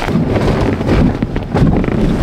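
Handling noise from a phone camera's microphone: rubbing and bumping against clothing and a car seat as it is carried about, with wind buffeting the microphone.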